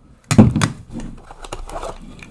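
Tin Funko Soda cans being handled and set down on a table: a loud thunk about a third of a second in, a second knock just after, then quieter handling noises.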